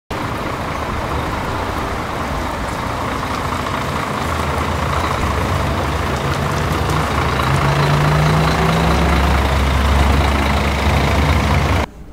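Coach bus engine running with a steady low hum, growing somewhat louder and a little higher in pitch from about halfway through. The sound cuts off abruptly just before the end.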